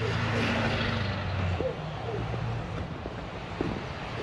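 A motor vehicle's engine running with a steady low hum that fades out about a second and a half in, leaving an even outdoor background with a few faint, distant voices.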